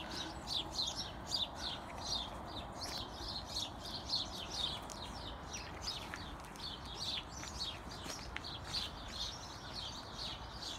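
Songbirds singing: a dense run of short, high chirps, each sliding downward, several a second and overlapping, over a faint steady background noise.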